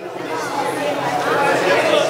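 Many legislators talking at once in a large assembly chamber, a steady hubbub of overlapping voices with no single speaker standing out.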